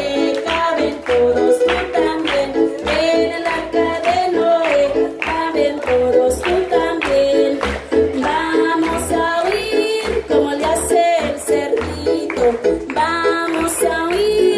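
A woman singing an upbeat children's song over music with a steady beat, with children and adults clapping along.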